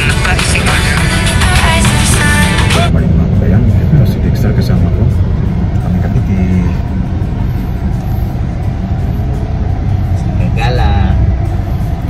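Steady low road rumble inside a moving car's cabin, with background music that stops about three seconds in.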